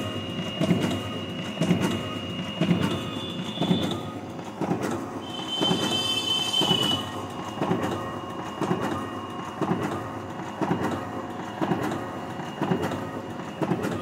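Ricoh DX 2430 digital duplicator printing envelopes, its paper feed and drum running in a steady rhythmic clatter at about two strokes a second, one stroke per envelope. A brief high tone sounds near the middle.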